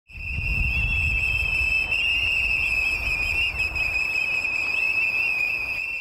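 Several whistles blown together in protest: one loud, steady, shrill tone with fainter wavering whistle tones above it. A low rumble sits underneath for the first four seconds.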